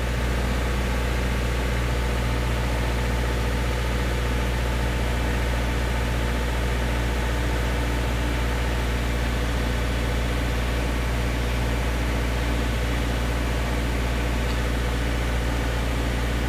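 Car engine idling steadily, heard from inside the cabin as a continuous low hum.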